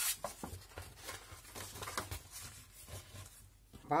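Sheets of kraft cardstock and card sliding and rustling as they are handled, with a few light taps.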